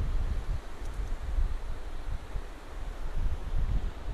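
Wind buffeting the microphone in uneven gusts, over the steady rush of a small creek waterfall.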